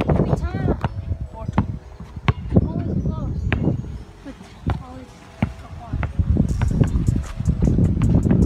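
A basketball dribbled on an outdoor court: a series of sharp bounces at uneven spacing.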